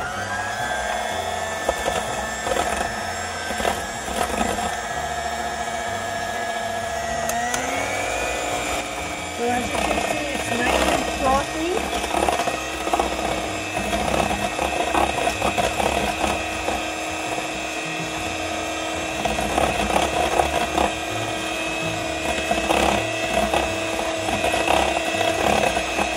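Electric hand mixer beating egg whites and sugar into meringue in a stainless steel bowl. Its motor whine starts at once, steps up in pitch about seven seconds in as it speeds up, then runs steadily, with the beaters clicking against the bowl.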